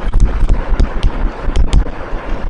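Writing on a lecture board: a quick, irregular run of sharp taps and knocks.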